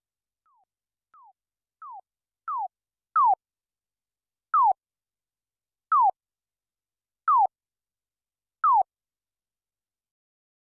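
BandLab's latency-test beeps: about ten short chirps that each fall in pitch. The first few grow louder, then they come evenly, about one every 1.4 seconds. The app plays these beeps to measure the phone's audio latency.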